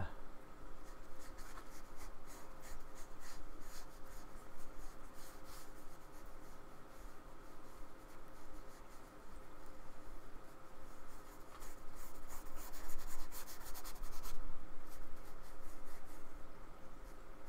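Small paintbrush scrubbing and dabbing thick acrylic paint onto a board in a run of short strokes, quickest and loudest about twelve to fourteen seconds in.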